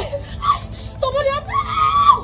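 A woman crying out in short wordless yells, then a long high-pitched scream held through the last half second.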